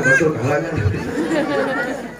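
Speech: voices talking, with overlapping chatter.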